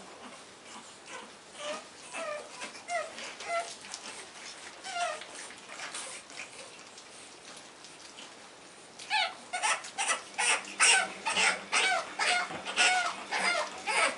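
Pug puppy whining and yelping: short, scattered whimpers at first, then about nine seconds in a fast run of loud yelps, about three a second.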